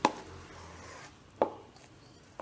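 A metal spoon knocking against a steel mixing bowl while stirring flour, twice: once at the start and again about a second and a half in.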